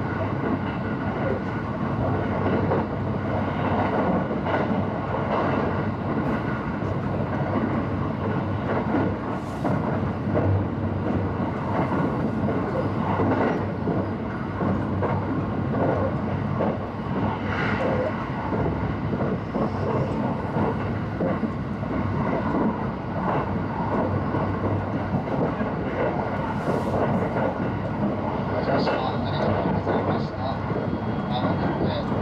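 Limited express electric train running at speed, heard from inside the passenger cabin: a steady rumble of wheels on rail, with a few faint ticks.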